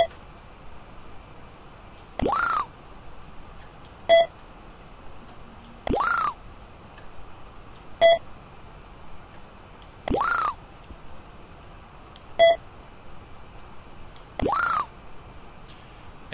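Audio cues from a portable measuring arm and its measurement software as points are probed: four times over, a short beep as a point is taken, then about two seconds later a half-second rising swoop as the second point completes each measured line.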